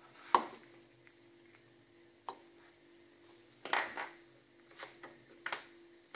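Plastic screw cap of a toothpaste tube being unscrewed and the tube handled: a sharp click about a third of a second in, then scattered lighter clicks and a short rustle around the middle.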